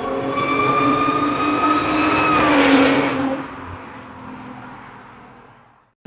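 Car engine revving sound effect: the engine note climbs steadily for about two and a half seconds, breaks into a burst of noise about three seconds in, then fades away.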